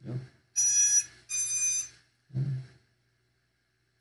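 Two electronic beeps, each about half a second long, with a short pause between them.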